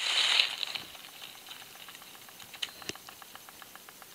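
Rustling in dry vegetation, loudest in the first second, then faint scattered ticks and patter: a small animal moving in the undergrowth, which the investigator thinks is a rabbit.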